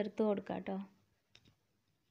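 A woman's voice speaking for about the first second, then near silence broken by two faint clicks.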